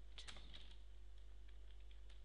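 Keystrokes on a computer keyboard: a quick cluster of clicks in the first second, then a few sparse, fainter clicks, over a low steady hum.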